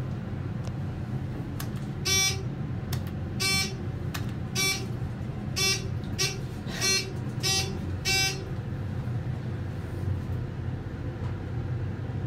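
A 2003 ThyssenKrupp hydraulic elevator's buzzer sounds in a run of short buzzes, about one a second for some six seconds, over a steady low hum inside the car.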